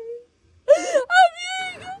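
A woman weeping aloud with joy, with high-pitched wailing cries: one fades out, then after a short silence two more drawn-out wails follow in the second half.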